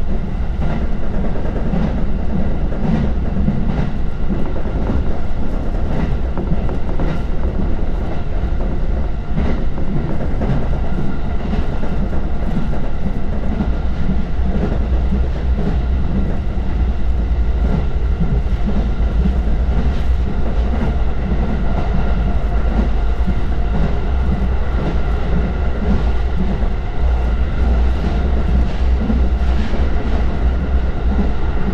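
The inside of a JR Joban Line commuter train car running at speed: a steady low rumble of wheels on rail, with scattered clicks as the wheels cross rail joints.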